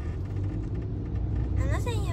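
Steady low rumble of a car's road and engine noise, heard from inside the cabin of the moving car. A woman's voice starts near the end.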